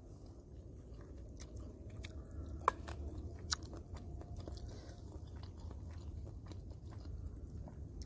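Close-miked chewing and mouth sounds of someone eating a mouthful of food, with scattered light clicks and two sharper ones about three seconds in.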